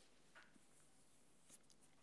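Near silence: faint room tone, with two very faint ticks, one about half a second in and one near the end.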